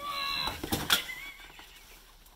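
A woman's short, high-pitched squealing laugh, followed by a few sharp knocks and rustles as she clambers over piled cardboard and household clutter.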